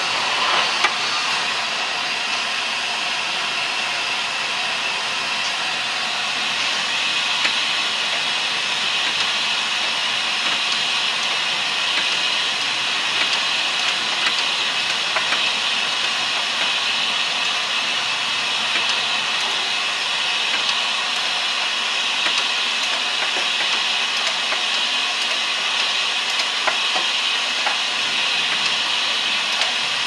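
A steady, loud hiss, like rushing air, with a few faint scattered clicks as the engine is turned over by hand with a long wrench.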